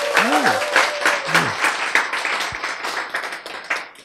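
Audience applauding, a dense patter of many hands clapping, with a few voices over it in the first second or so; the applause thins and dies away near the end.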